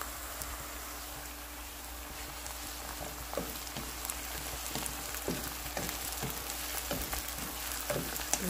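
Diced onion and tomato sizzling steadily in hot oil in a frying pan. From about three seconds in, a wooden spatula stirring them gives short, irregular knocks and scrapes against the pan.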